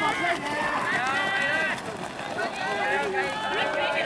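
Several voices calling out loudly to a passing pack of middle-distance runners. A PA announcer ends a sentence at the start.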